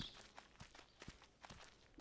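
Faint footsteps: a few soft, scattered steps as the deer walks across the room.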